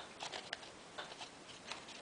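Faint, scattered crinkles and soft clicks of a folded origami paper module being handled and turned in the fingers.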